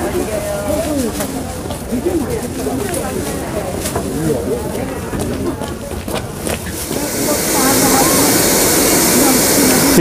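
Market crowd chatter, then from about seven seconds in a loud, steady hiss of steam escaping from a stacked metal food steamer.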